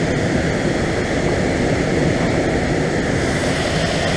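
Steady rushing of a fast, turbulent river.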